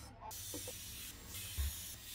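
A large kitchen knife slicing through cooked octopus tentacle on a wooden cutting board, with a soft thud of the blade meeting the board about one and a half seconds in, over a steady hiss.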